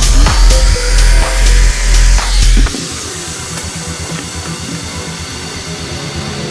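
Background electronic music throughout. For the first two and a half seconds a loud Makita jigsaw cutting an MDF strip runs over it, then stops suddenly, leaving the music alone.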